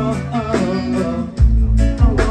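Live band playing an instrumental passage, led by an electric guitar melody with sliding, bent notes. The bass and drums thin out, then come back in strongly about one and a half seconds in.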